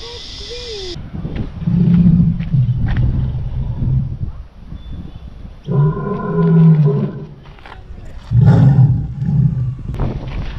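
Three long, deep lion-like roars, each lasting one and a half to three seconds, spaced a second or two apart.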